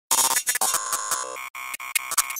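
Glitchy electronic intro sting: a choppy burst of music and noise that stutters, cutting in and out abruptly many times.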